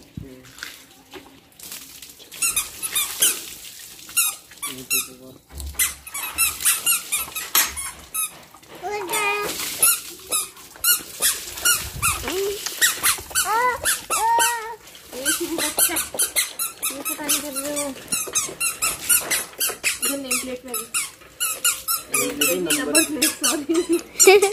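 Squeaking of hands and a wet cloth rubbing over a Bajaj Pulsar motorcycle's wet painted bodywork, in many short repeated strokes, with rising-and-falling squeals in the middle of the stretch.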